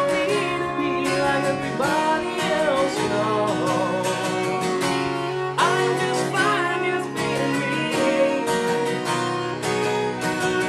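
Acoustic guitar strummed in a steady rhythm, with a fiddle playing a wavering melody line over it in an instrumental break.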